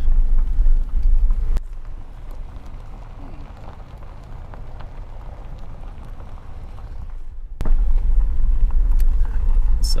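A vehicle driving slowly on a gravel road: a steady low rumble of engine and road noise. It drops much quieter about one and a half seconds in and comes back up abruptly about seven and a half seconds in.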